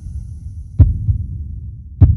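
Intro sound effect: a deep, pulsing bass rumble with heavy thuds, and a sharp hit a little before halfway and another at the very end.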